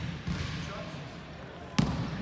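A basketball bouncing on a hardwood gym floor, a few dribbles with the sharpest and loudest bounce near the end. Voices echo in the hall behind it.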